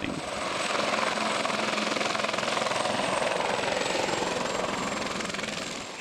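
QH-50 DASH drone helicopter in flight, its two counter-rotating rotors and engine giving a steady whirring noise that fades in at the start and fades out near the end.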